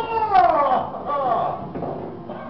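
A person's drawn-out vocal exclamation falling in pitch, followed by a second, shorter falling cry, growing quieter toward the end.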